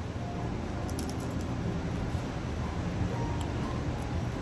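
Steady low hum of room air conditioning, with a few faint crunches about a second in as a pumpkin-seed cracker is bitten and chewed.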